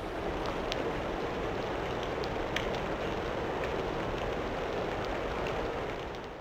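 Steady rain falling, with a few sharper drips standing out. It begins to fade away near the end.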